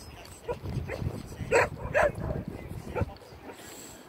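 An animal giving a series of about six short, sharp barks or calls, the two loudest in the middle.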